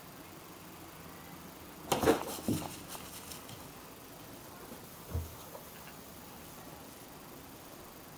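A cat playing indoors, knocking against things: a short clatter of knocks and rustling about two seconds in, then one soft thump about three seconds later, over quiet room tone.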